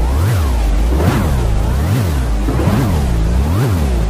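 Nursery-rhyme soundtrack heavily warped by an effects edit, its pitch swooping up and down in repeated arcs about every 0.8 seconds over a pulsing bass.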